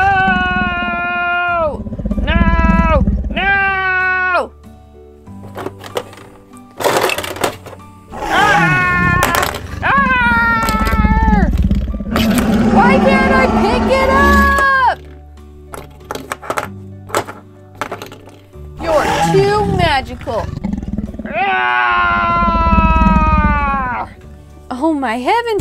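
A person's voice making long, drawn-out dinosaur roars and cries, several in a row, over background music. Short clacks of plastic playset pieces being knocked over come between the roars.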